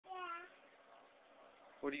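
One brief, high-pitched vocal sound, held level for about a third of a second, in the first half-second; a man starts speaking near the end.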